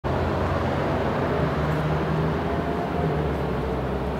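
Steady street traffic noise with a low engine hum.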